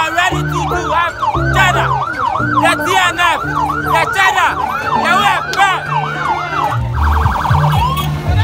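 Police escort siren sounding in fast up-and-down sweeps, about three a second, switching to a rapid warble near the end, over a loud, low music bass line.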